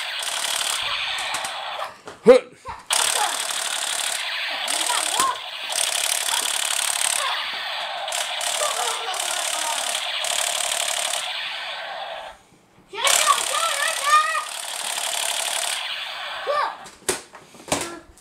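Light-up battery toy gun firing its electronic rapid-fire sound through a small built-in speaker: a harsh, tinny rattling buzz held in long bursts, breaking off briefly about two seconds in and again just after twelve seconds. A child's voice calls out faintly over it now and then.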